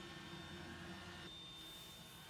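Quiet room tone: a faint steady hum and hiss.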